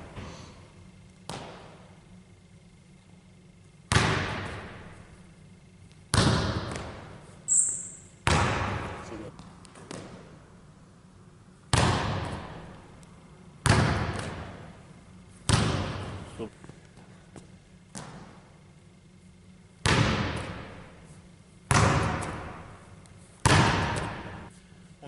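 A basketball bouncing on a hardwood gym floor in single bounces, about ten of them at roughly two-second intervals, each echoing for a second or more in the large hall. A sneaker squeaks briefly about seven and a half seconds in.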